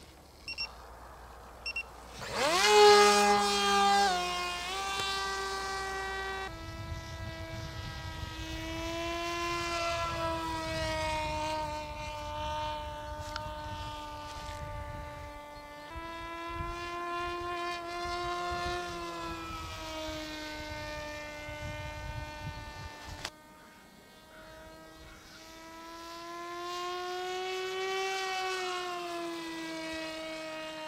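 Electric motor and propeller of a Reptile S800 RC plane whining: it spins up with a sharp rise in pitch about two seconds in, loudest just after, then runs steadily at high throttle, the pitch rising and falling slowly as the plane flies around.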